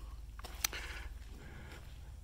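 Quiet background with a steady low hum and a single short click about a third of the way in.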